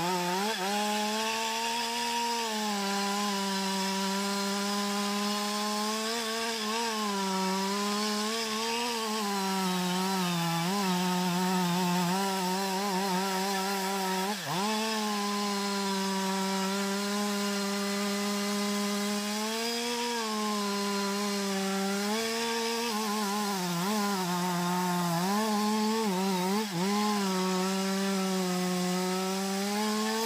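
Two-stroke chainsaw running under load as it cuts anjili (wild jack) wood. Its engine pitch wavers up and down as the chain bites, and about halfway through it sags sharply for a moment before picking back up.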